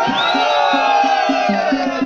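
Live Balti folk music: a rapid, steady drum beat of about five strokes a second alternating between two pitches, with one long held note or cry rising and falling over it.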